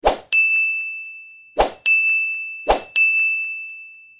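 Animated-button sound effects: three times, a short swish is followed by a bright ding that rings and slowly fades, with the dings coming about a second apart and the last one still ringing at the end.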